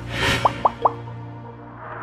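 Logo outro sting with music: a short whoosh, then three quick rising plops about half a second in, over a steady low musical tone that starts to fade near the end.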